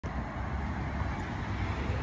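Steady low rumbling outdoor background noise with no clear single event.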